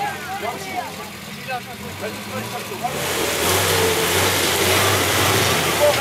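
Suzuki Santana trial 4x4's engine running, then revving up hard about three seconds in and staying loud with a wide rush of noise.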